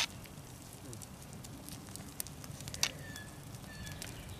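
Slotted metal spatula stirring thick chili in a cast iron Dutch oven, with a few sharp clicks as it knocks the pot, the loudest a little under three seconds in. Under it runs a steady low crackle from the fire and the simmering pot.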